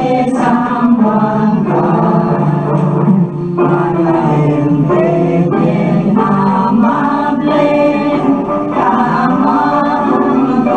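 A choir singing a Chavacano song with accompaniment.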